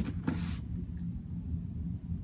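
Low, steady background rumble and hum in a small room, with a brief soft rustle in the first half-second.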